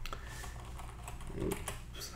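A few scattered computer keyboard key clicks, advancing a slide show, over a faint steady low hum.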